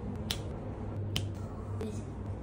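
Finger snaps: two sharp snaps less than a second apart, then a fainter third near the end.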